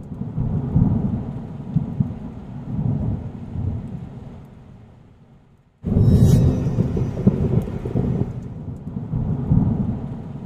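Cinematic title sound effects: a deep, rumbling noise that fades away over a few seconds, then cuts in with a sudden loud boom and a bright crack a little before halfway, after which the rumbling carries on, thunder-like.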